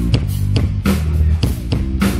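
Live band kicking off a funky groove: an electric bass guitar line over a steady drum-kit beat.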